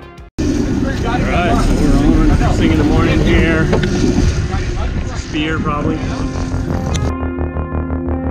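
Sport-fishing boat underway: engine and water noise, starting suddenly after a short drop-out, with a voice calling out a few times. Background music takes over about seven seconds in.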